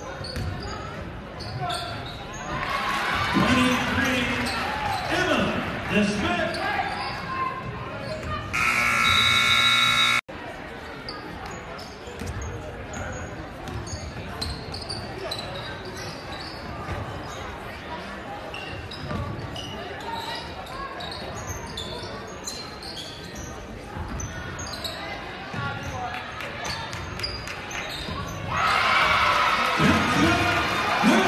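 Basketball gym during a game: crowd shouting in the first seconds, then the scoreboard horn sounds once for about a second and a half and cuts off sharply. After that, quieter play follows with the ball bouncing on the hardwood. Near the end the crowd breaks into loud cheering.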